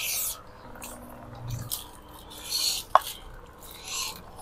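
Close-up eating noises from people eating rice and fish with their fingers: short smacking and sucking sounds at the mouth, a brief low hum partway through, and one sharp click about three seconds in.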